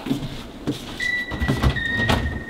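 Low footstep thumps on a floor, then about a second in a steady high electronic tone begins: the opening note of an intro jingle.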